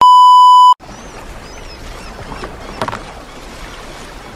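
A loud, steady test-tone beep, the kind that goes with TV colour bars, lasting under a second and cutting off suddenly. It is followed by an even outdoor wash of sea and wind noise.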